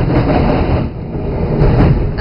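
Tram in motion heard from inside the car: a loud, steady low rumble of the wheels running on the rails.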